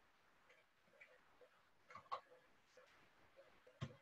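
Near silence with a few faint computer keyboard clicks: two about two seconds in and a sharper one near the end, as keys are pressed to switch to the accounting software and enter a quantity.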